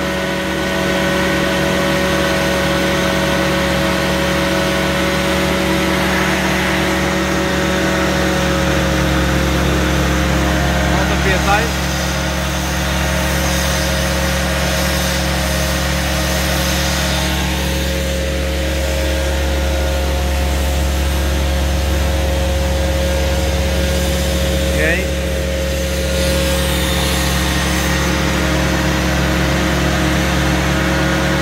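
Prochem Performer 405 truck-mount carpet-cleaning machine running steadily: its engine and vacuum blower hum with a steady whine over them, and the low hum grows a little stronger about nine seconds in.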